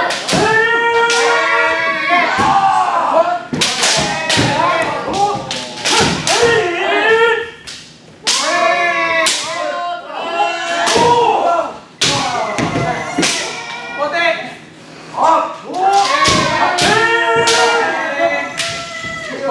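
Kendo sparring: several people's drawn-out kiai shouts overlapping, with repeated sharp cracks of bamboo shinai striking armour and thuds of stamping feet on the wooden dojo floor.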